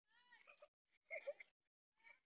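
Two faint, high-pitched voice-like calls with bending pitch, the second one louder.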